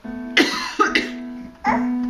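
Casio electronic keyboard sounding single held notes as a toddler presses its keys, with a woman coughing three times into her hand.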